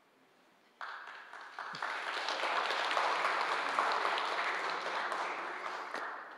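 Audience applauding, starting just under a second in, swelling, then dying away.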